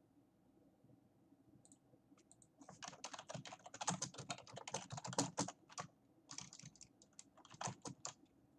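Typing on a computer keyboard: a quick run of key clicks that starts about two and a half seconds in, after a quiet start, with a short pause before the last few keystrokes.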